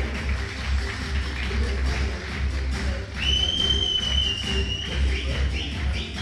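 Romanian popular dance music played live, with a heavy, steady bass beat. In the second half a loud, high whistle is held for about two seconds, dipping slightly in pitch.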